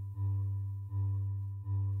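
Looped marimba sample in a software synthesizer's sample engine: one low sustained note restarting about every three-quarters of a second, each pass fading slightly before the next. Loop crossfade is being applied to smooth out clicks at the loop point.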